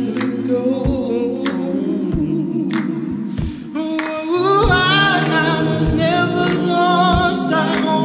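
A cappella song of layered voices singing in harmony over a beat of sharp percussive hits. A voice glides up in pitch about halfway through, and the music swells louder from there.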